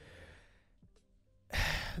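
A man's breath into a close microphone: a faint exhale at first, then a loud, sharp breath about one and a half seconds in, just before speech resumes.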